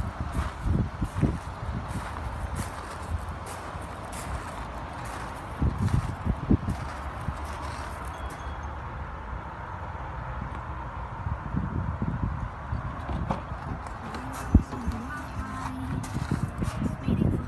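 Footsteps crunching on loose gravel, irregular and uneven, with a single sharp click near the end as the car's door is opened.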